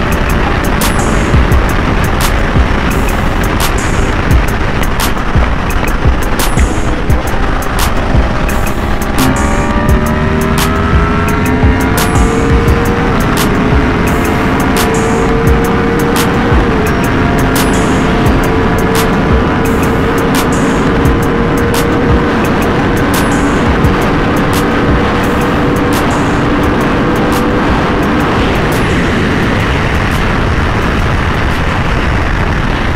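Loud wind rush and the 2023 Yamaha R1's crossplane inline-four engine running at highway speed, its note rising about a third of the way in and then holding steady.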